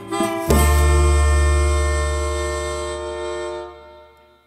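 A band's song ending: a few short notes, then a final chord struck about half a second in, with a melodica among the instruments and a deep bass note beneath, held and slowly fading out near the end.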